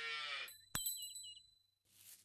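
A calf mooing, one long call that fades out about half a second in, then a single sharp knock with a few short high chirps around it.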